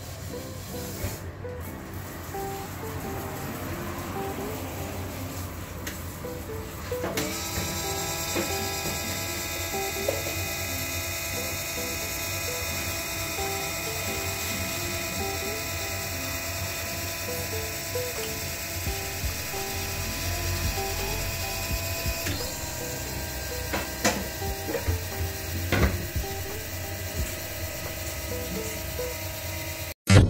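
Cabinet egg incubator's circulation fan running with a steady mechanical whirr and rattle, under light background music. The machine sound grows louder about seven seconds in.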